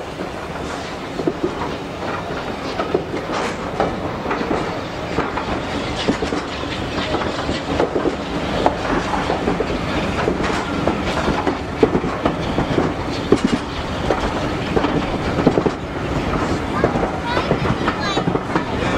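Passenger train rolling slowly, its wheels clicking over the rail joints, with irregular rattles and knocks from the carriage, heard from on board.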